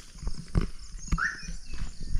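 A few soft knocks and rustles from a handheld camera being moved and gripped, with a short high chirp about a second in.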